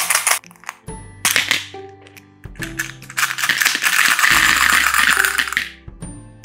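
Small candy-coated chocolates (M&M's) rattling against clear plastic and clattering onto a heap of candies: two short bursts, then a longer clatter of about three seconds that dies away near the end. Background music plays throughout.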